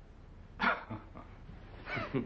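A short, sharp burst of men's laughter about half a second in, then laughter starting up again near the end.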